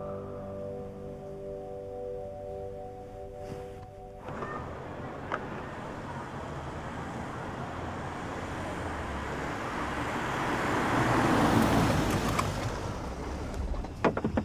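Soft background music of sustained tones stops abruptly about four seconds in. Then a car approaches along a road, its engine and tyre noise swelling to a peak near the end and easing slightly.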